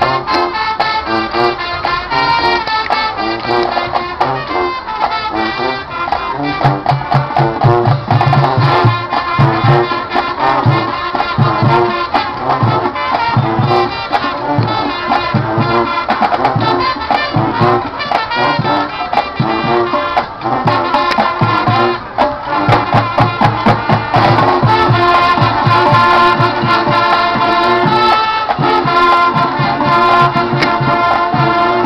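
High school marching band playing live: brass carrying the melody over a steady drum beat, the low beats growing strong about seven seconds in.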